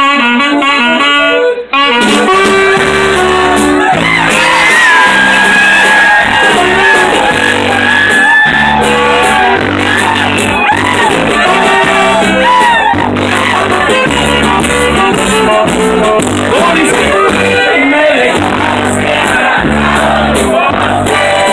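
Live norteño-style huapango band with saxophone playing: a quick saxophone run opens, there is a brief break, and then the full band comes in with a steady bouncing bass under the sax melody.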